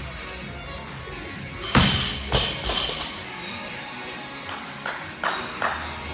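Loaded barbell with bumper plates dropped from the shoulders onto the gym floor: one heavy impact a little under two seconds in, followed by two smaller bounces, then a few lighter knocks near the end.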